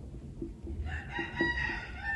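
A rooster crowing: one long, steady-pitched crow beginning about a second in and running past the end, with a brief break near the end. Under it are faint light taps of a marker writing on a whiteboard.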